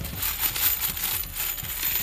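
Loose metal wood screws clattering and jingling against each other in a plastic tub as a hand rummages in and scoops up a handful.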